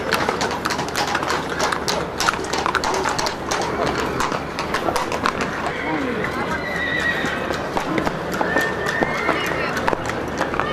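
Horses' hooves clip-clopping on hard ground in quick, irregular clicks, with a horse whinnying from about six seconds in, over the murmur of people talking.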